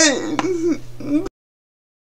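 A woman's voice from a speaker with athetoid cerebral palsy: a throat-clearing sound, then a wavering, drawn-out vocal sound that falls in pitch. The audio cuts off suddenly a little over a second in.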